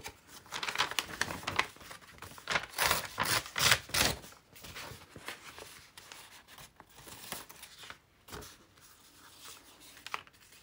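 Sheets of paper rustling and crinkling as they are picked up and handled, loudest in the first four seconds and fainter after.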